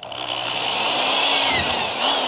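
Corded electric drill starting up and running, its twist bit boring a hole through the wall of a plastic pipe; a steady motor whine that dips slightly in pitch partway through.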